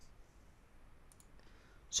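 A few faint computer-mouse clicks, one at the start and two close together about a second in, over quiet room hiss.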